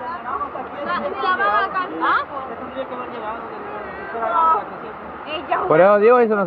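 Indistinct chatter of several people, with voices coming and going, over the steady rush of river water running through rocky rapids.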